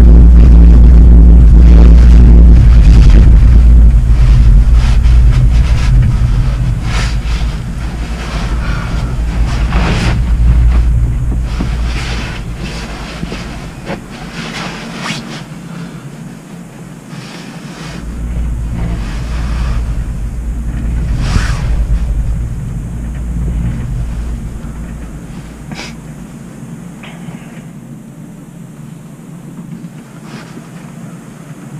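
Low rumble of a cable-car cabin running down its haul rope, heard from inside the cabin. It is loudest for the first few seconds, then fades and swells again, with scattered light knocks.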